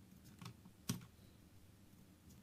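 A few faint clicks from a computer keyboard and mouse, the sharpest about a second in.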